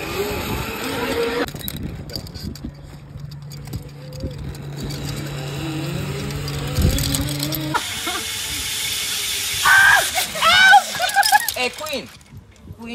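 Zip-line trolley running along a steel cable as riders slide over, a whirring hum with rising whines. Loud voices laugh and shout near the end.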